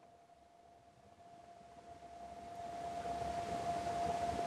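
Room tone: near silence at first, then a soft hiss with a faint steady hum that slowly grows louder over the last few seconds.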